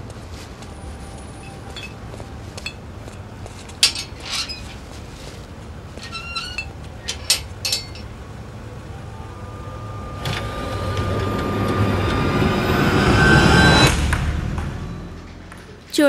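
A small Suzuki hatchback's engine running with a steady low rumble, with a few sharp knocks and clicks about four seconds in and again around six to seven seconds. From about ten seconds in, a rising swell of noise builds to the loudest point near fourteen seconds, then falls away.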